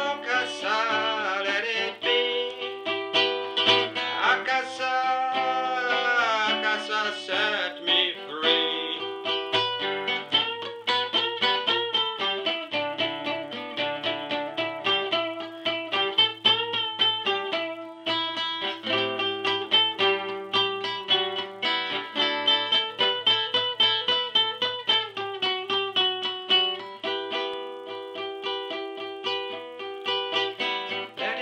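Acoustic guitar improvisation with a reggae feel. Wordless singing runs over the playing for the first eight or nine seconds. After that the guitar carries on alone in quick plucked notes.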